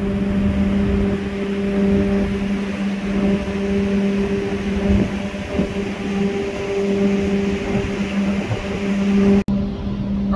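Steady machinery hum aboard a ship in port: a constant low drone with a clear pitch over a rumble. It cuts out for an instant near the end.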